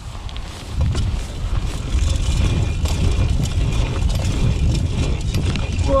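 Wind buffeting the camera microphone and BMX tyres rolling over a dirt trail, a steady low rumble that grows louder about two seconds in, with faint scattered clicks and rattles.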